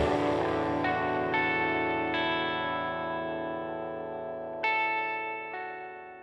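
Music: the full band cuts off and a guitar through effects is left ringing, with single notes picked about a second in, around two seconds and near five seconds, each ringing on as the sound slowly fades.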